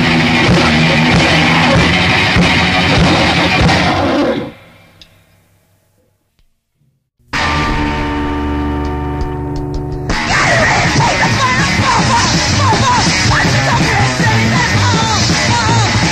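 Noise-rock band recording: a loud, dense track stops at about four seconds, followed by a few seconds of near silence between songs. The next song opens at about seven seconds with held, ringing notes, and the full band crashes in loud and chaotic at about ten seconds.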